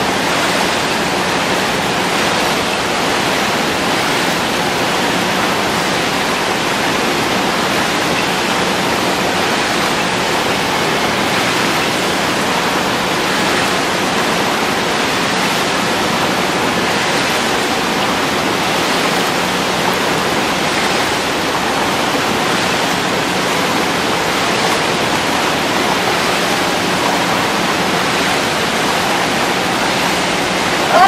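Steady, loud rush of churning water in an indoor dragon boat paddling tank, the water stirred up by a crew paddling hard.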